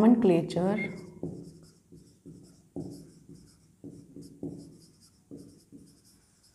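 Whiteboard marker writing in a series of short, separate strokes.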